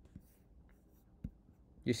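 Quiet room tone with a few faint short clicks, one a little louder past the middle, then a man's voice starts right at the end.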